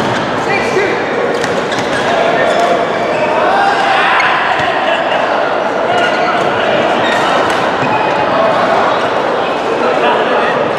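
Busy badminton hall: repeated racket strikes on the shuttlecock and sneakers squeaking on the court floor, over a steady babble of many voices in a large, echoing hall.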